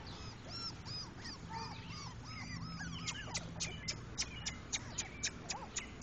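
Four-week-old English Pointer puppies whining and squeaking: many short, high-pitched cries that rise and fall. About halfway through, a quick run of sharp short chirps sets in, about four a second.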